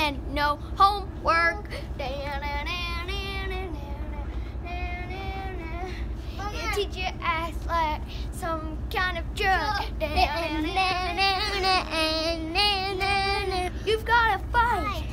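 Children singing, their voices wavering up and down in pitch, over a steady low rumble.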